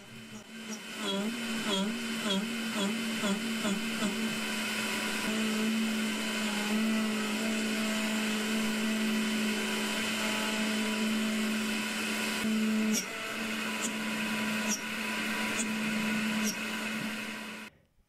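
Makera Z1 desktop CNC mill's spindle cutting aluminium with a 5 mm three-flute end mill: a steady, pitched machining whine with a few quick wobbles in pitch in the first few seconds and faint high squeaks later. The squeaking, worst in the corners, likely indicates chatter, a sign that the feeds and speeds need further tuning. The sound stops abruptly just before the end.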